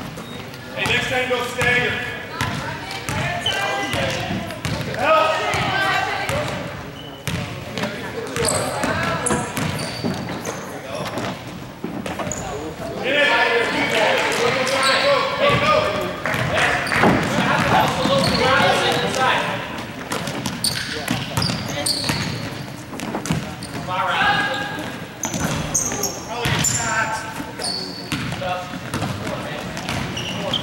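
Basketball being dribbled on a hardwood gym floor amid indistinct shouting from players and spectators in a large gym. The voices are loudest for several seconds around the middle.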